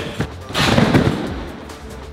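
A gymnast landing in a foam pit: a sudden crash of foam blocks about half a second in, fading over the following second, after a few dull knocks from the sprung floor of the run-up.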